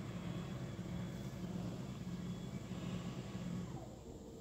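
Electric standing desk's lift motor running steadily as the desktop lowers, stopping near the end when the desk reaches its lowest height of 28 inches.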